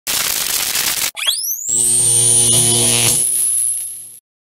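Synthesized logo sting: a burst of static noise that cuts off after about a second, then a fast rising sweep into a held electronic chord with a thin high whine on top, fading out near the end.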